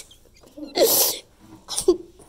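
A person making a short, sneeze-like burst of breath and voice about a second in, followed by a smaller one near the end.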